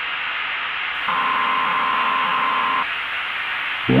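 Steady static hiss like a dead broadcast channel. A single steady high tone sounds over it for about two seconds in the middle.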